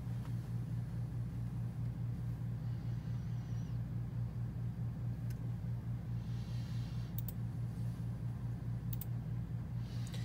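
A steady low hum that pulses evenly several times a second, with a few faint clicks.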